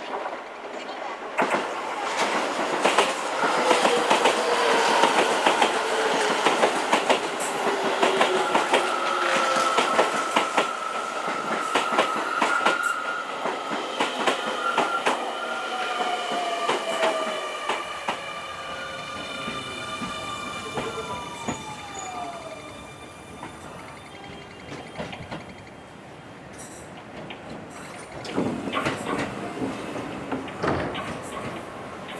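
Keio electric commuter train pulling into the platform: wheels clicking over rail joints and squealing, then a whine falling in pitch as it slows to a stop. Near the end a second train can be heard approaching on the other track.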